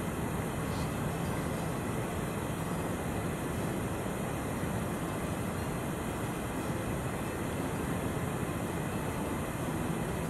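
Steady, even background noise, a hiss and low rumble with no distinct events.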